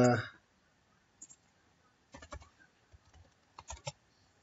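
Quiet, scattered clicks of a computer keyboard and mouse: one about a second in, a quick cluster around two seconds, and a few more near the end, as code is scrolled and selected for copying.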